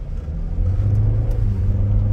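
Volkswagen Jetta's 1.5-litre turbo four-cylinder engine heard from inside the cabin, a steady low hum as the car pulls away, growing a little louder about half a second in.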